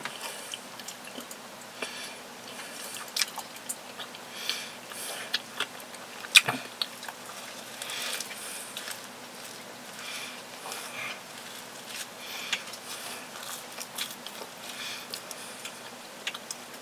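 Close-up sounds of a person eating a soft, fresh croissant: biting and chewing with irregular mouth smacks and small clicks. There is one sharp click about six seconds in.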